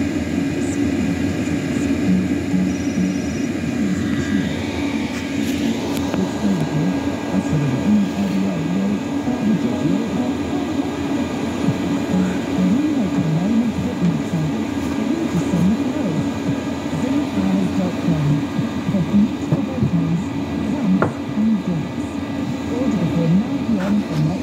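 Chinese diesel air heater running at full output, its combustion fan and burner giving a steady hum, with indistinct voices in the background.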